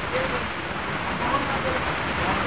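Steady background hiss with no clear events in it.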